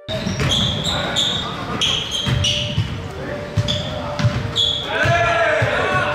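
Indoor basketball game on a hardwood court: sneakers squeaking in short high chirps, the ball bouncing with low thumps, and players' voices calling out, all echoing in a large gym.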